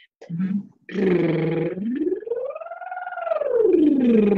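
A woman's singing voice doing a vocal exercise: after a short low sound, a low tone is held about a second in, then slides smoothly up to a high note and back down near the end, a siren-like sweep through the middle (mixed) voice.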